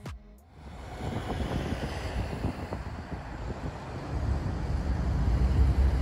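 Outdoor city-street ambience: a steady low rumble of traffic and wind that fades in over the first second and grows louder from about four seconds in.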